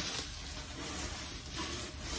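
Plastic bubble wrap crinkling and rustling steadily as it is pulled off an item by hand.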